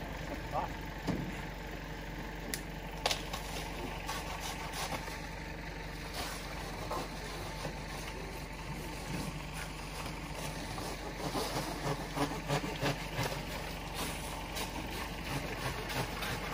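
Truck-mounted aerial lift's engine running steadily at idle, a constant low hum, with a few light clicks scattered through it.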